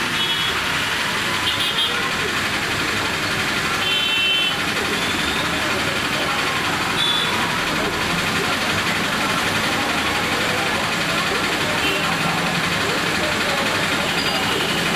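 Steady hiss of falling rain mixed with street traffic of motorbikes and small vehicles on a wet road, with short high horn beeps a few times.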